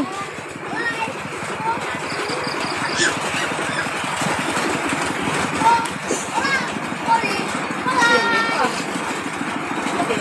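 A small engine idling steadily with a rapid, even putter, with faint voices over it.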